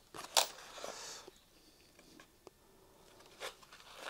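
Aerosol contact-cleaner spray hissing in a short burst of under a second, starting about half a second in, then a few faint clicks of handling.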